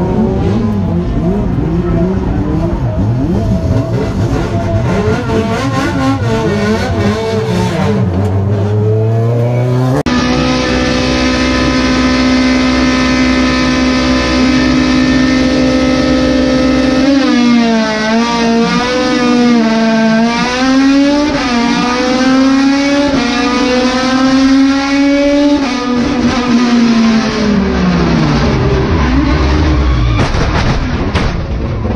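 Race car engine heard from inside the cabin through the onboard camera, running hard with its revs climbing in the first part. An abrupt change about a third of the way in brings another car's engine, held at steady revs at first, then dipping and rising repeatedly with gear changes, and falling away near the end as it comes off the throttle.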